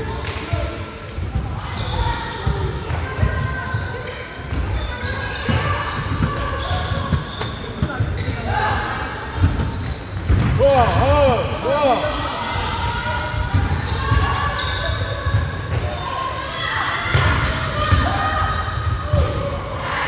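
Basketball game in a large gym hall: the ball bouncing on the hardwood court amid players' and spectators' indistinct shouts, with a run of short, high squeaks, like sneakers on the floor, about halfway through.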